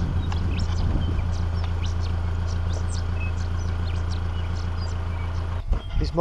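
Vehicle engine running at steady low revs while crawling behind a mob of sheep, with scattered short high-pitched sounds over it. The engine sound cuts off shortly before the end.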